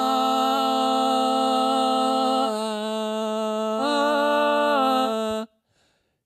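A man's voice holds one long, steady sung note into a handheld microphone, and twice a second, slightly higher note sounds alongside it, giving two pitches at once: a mock 'diablofoni' (diplophonic, split-voice) singing trick. The note cuts off suddenly about five and a half seconds in.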